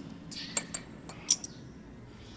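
A glass bottle clinking as it is handled and raised to drink: a few short, sharp clinks, the loudest pair about a second and a third in.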